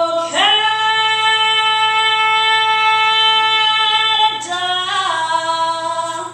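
A young girl singing unaccompanied into a microphone, holding one long steady note for nearly four seconds, then moving down and back up through two shorter notes near the end.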